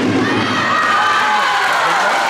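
A crowd of children shouting and cheering together, many high voices overlapping.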